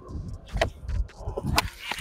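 Skateboard wheels rolling on concrete, with a few light clicks and then a sharp clack near the end as the tail is snapped down to pop a scoop.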